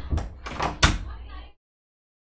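A short clatter of knocks ending in one sharp bang a little under a second in.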